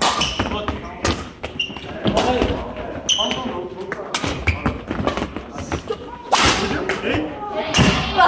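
Badminton rally: sharp racket strikes on the shuttlecock and thuds of players' shoes on the gym floor, with voices in a large echoing hall.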